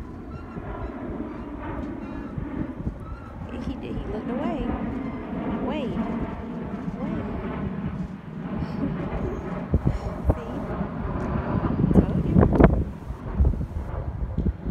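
A motorboat's outboard engine running steadily as the boat moves past on the water. Wind rumbles on the microphone near the end.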